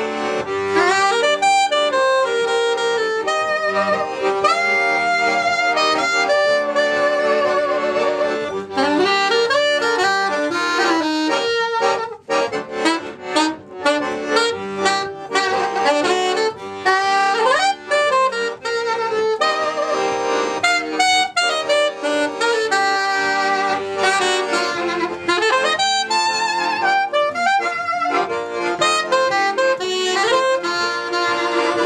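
Soprano saxophone and piano accordion playing a bluesy tune together as a duo, with a stretch of short, clipped notes about twelve seconds in.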